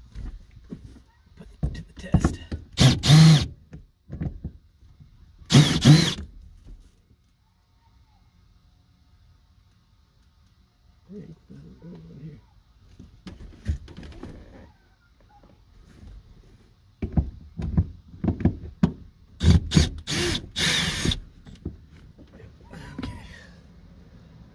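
Cordless drill/driver with a T15 Torx bit running in short bursts to back out interior trim screws, with knocks from handling the tool against the trim in between. The bursts come in two groups, with a quiet stretch of a few seconds between them.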